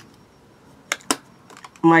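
Two sharp clicks close together about a second in, then a few fainter ticks, from small plastic makeup cases being handled; a woman's voice starts near the end.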